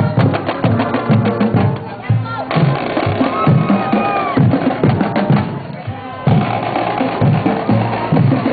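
High school marching band drumline playing: snare drums rattling out a fast beat over deep, regular bass drum hits.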